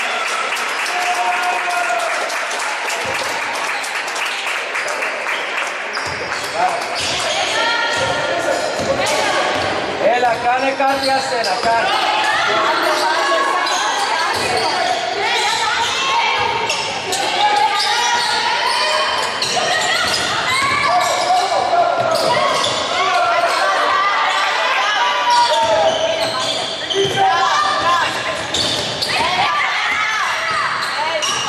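A basketball bouncing on a wooden court during live play, with players' sneakers and shouting voices echoing in a large gym.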